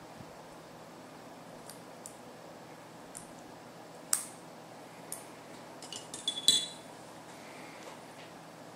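Small fly-tying scissors snipping away excess kip tail hair at the hook: a few scattered sharp metallic snips, then a quick run of snips and clinks about six seconds in, the loudest.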